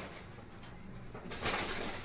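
Rustling and handling of clothes and belongings being packed into a metal trunk, in short irregular bursts, the loudest about a second and a half in.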